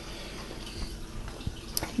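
Quiet handling of paint containers in a hard face-painting case: a few faint small clicks and knocks as items are lifted out.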